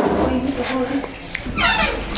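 A toddler's voice, quiet vocalising, then a short high-pitched squeal near the end.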